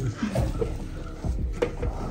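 Water splashed by hand onto an earthen mud wall to wet it before fresh mud is applied: a few irregular wet splashes and knocks.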